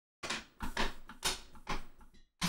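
About five short scuffs and knocks, irregularly spaced, as a person shifts his weight in an office chair.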